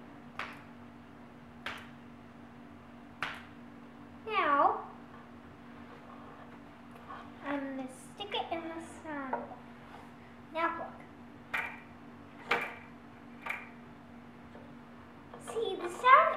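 A rubber band plucked by hand again and again, first held stretched in the air and then stretched over a wooden harp sound box: a string of short, sharp twangs. Children's voices come between the plucks and are the loudest sound.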